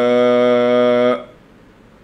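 Man reciting a Quranic verse in a chanting voice, holding one long steady note that stops about a second in, followed by faint room hiss.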